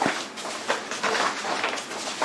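A large folded paper poster being unfolded by hand, the paper rustling and crackling unevenly as the folds open, with a sharp crackle at the start.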